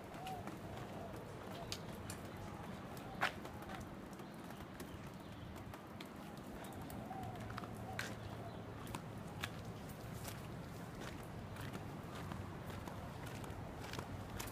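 Footsteps on a concrete yard, with scattered light clicks and knocks and one sharp click about three seconds in, over a low steady background hum.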